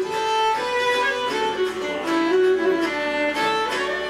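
Fiddle playing a folk tune note by note, with autoharp chords strummed beneath it.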